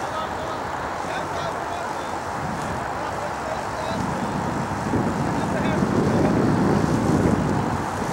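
Outdoor ambience with faint distant voices, and a low rumble that swells about four seconds in, peaks near seven seconds and then drops back.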